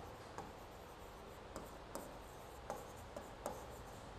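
A stylus writing on an interactive display screen: faint taps and light rubbing as words are written, about five soft ticks spread across the few seconds.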